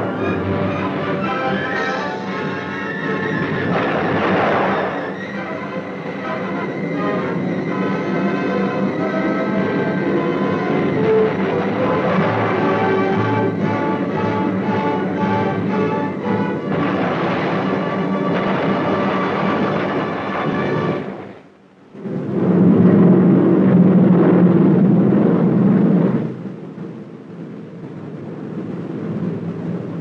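Orchestral film score with timpani. It breaks off briefly about two-thirds through, then comes back with a loud low passage before fading down.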